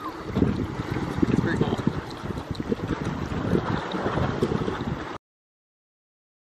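Wind buffeting the microphone outdoors: a gusty, rumbling rush that cuts off suddenly about five seconds in.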